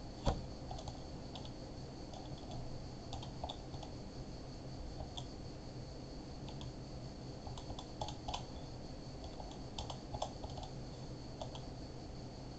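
Irregular keystrokes on a computer keyboard, faint and scattered, in small clusters, with a sharper click just after the start. A faint steady hum runs underneath.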